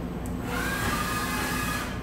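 CNC vertical machining centre starting its program: a hissing rush with a faint high whine comes on about half a second in and cuts off just before the end, over a steady shop hum.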